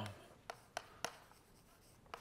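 Chalk writing on a blackboard: a few short, faint clicks and scrapes of the chalk strokes in the first half, then quieter.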